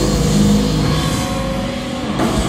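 Live hardcore punk band playing loud: distorted electric guitar and bass hold sustained, ringing chords over a heavy low rumble, with few drum hits.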